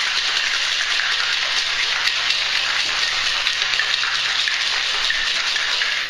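Ice rattling hard inside a stainless steel cocktail shaker shaken continuously, a dense, steady rattle that stops at the end.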